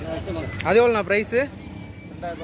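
A person's voice: three short vocal sounds, each rising and then falling in pitch, about half a second to a second and a half in. Steady street noise runs underneath.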